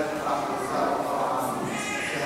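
Voices singing a liturgical chant, with pitches held and moving from note to note.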